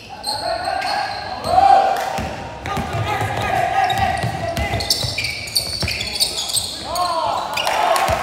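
Basketball being dribbled on a sports-hall court, with sneakers squeaking on the floor and players' voices echoing in the large hall.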